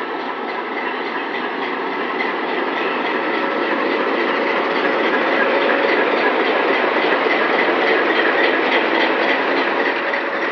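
Alco RSD-39 diesel locomotive and its passenger coaches rolling past at close range, with the locomotive's diesel engine running and its wheels running over the rails. The sound grows steadily louder, peaking a couple of seconds before the end.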